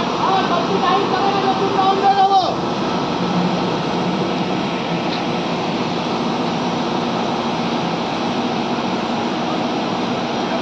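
SANY truck crane's diesel engine running steadily under hoisting load. A drawn-out shouted call sits over it for the first two and a half seconds, then stops.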